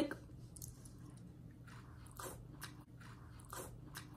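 Faint chewing of a sauced shrimp close to the microphone, with a few soft mouth clicks.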